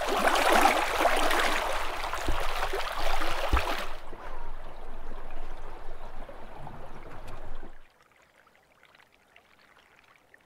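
Water rushing and splashing along the hull of a moving inflatable dinghy, loud for about four seconds and then quieter with a low rumble underneath. It cuts off suddenly near the end to near silence.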